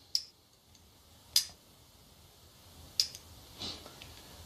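Three sharp, small clicks about a second and a half apart from a hand-held thumb-trigger archery release aid as its trigger is worked and it fires.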